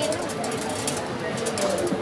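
Camera-type colour sorting machine running, green coffee beans streaming through its chutes into plastic bins as it sorts out the black beans: a steady hiss with fine, rapid ticking over it.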